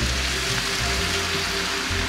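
Scrambled eggs and ham sizzling in a hot frying pan as malt liquor is poured into it in a thin stream, a steady hiss. Background music with a steady bass plays under it.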